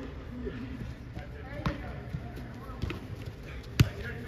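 A soccer ball being struck and bouncing on artificial turf: three short thuds, the loudest near the end.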